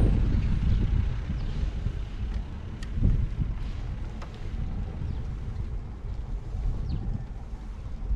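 Wind buffeting the microphone in a steady low rumble, with a brief louder thump about three seconds in.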